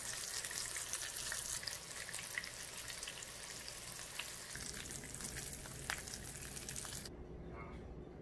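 Potato-filled corn tortilla tacos frying in hot vegetable oil in a skillet: a steady crackling sizzle with small pops, the oil bubbling around the tortillas as they crisp. The sizzle cuts off suddenly about seven seconds in.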